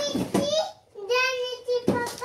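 A toddler's high-pitched voice in two drawn-out, sing-song calls without words, followed by a short sharp knock near the end.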